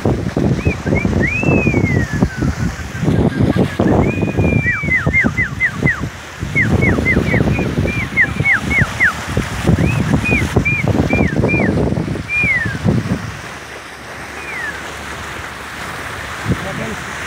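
Sea water rushing and splashing at a sailboat's bow, with wind buffeting the microphone, easing near the end. Over it, a person whistles runs of short, high notes, mostly falling in pitch, to call the dolphins.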